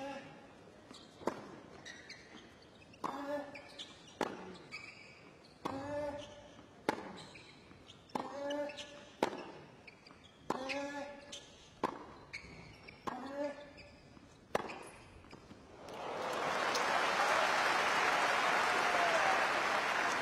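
Tennis rally on a hard court: racket strikes on the ball about a second apart, about a dozen in all, several with a player's grunt. After the last hit, about three-quarters of the way through, crowd applause swells up for the finished point.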